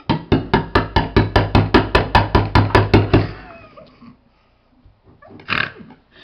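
A rapid series of about sixteen sharp knocks, roughly five a second for three seconds, then stopping: a knife being hammered repeatedly into the lid of a tin can to puncture it open without a can opener.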